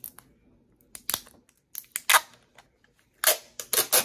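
Clear tape being pulled off its roll in short tugs: a string of brief, sharp ripping noises, a few in the first half and more close together from about three seconds in.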